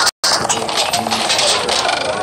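Cartoon soundtrack: music mixed with quick clattering sound effects, after a brief dropout right at the start.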